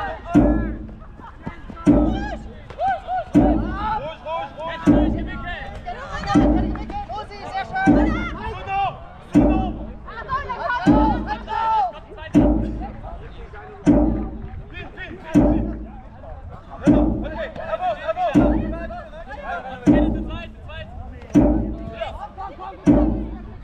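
A Jugger timekeeping drum struck steadily about every second and a half, counting the stones that time the play, about fifteen beats. Players' voices shout between the beats.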